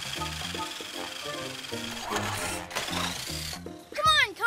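Cartoon background music with a bass line stepping from note to note, and a thin steady high tone held above it.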